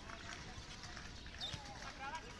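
Distant voices of people talking and calling outdoors, over a faint background hum, with a few small scattered knocks.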